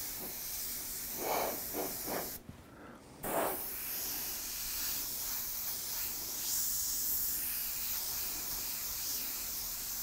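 Airbrush spraying paint onto a panel: a steady hiss of air that stops for under a second about two and a half seconds in, then starts again. A couple of brief, softer sounds stand out near the hiss's stop and restart.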